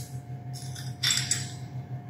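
Brief metallic clink and rattle about a second in, from a bimetal dial thermometer being handled after its calibration nut has been turned, over a steady hum.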